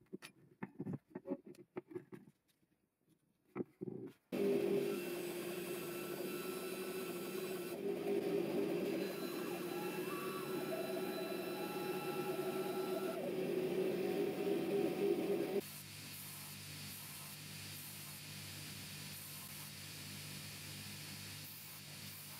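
Light clicks and taps as G10 handle scales are handled on a wooden bench, then a small wooden-framed bandsaw starts about four seconds in and runs steadily, cutting the black G10 scale. Past the middle it gives way abruptly to the quieter, even hum of a belt grinder running.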